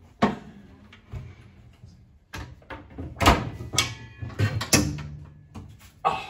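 Wooden cupboard doors being shut and opened, a series of knocks and clacks, the loudest about three seconds in.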